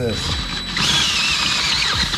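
DeWalt 20V cordless drill running under load, driving a step bit that cuts the first threads out of a metal drive wheel's threaded bore. A high whine that wavers in pitch rises over the cutting noise from about a second in.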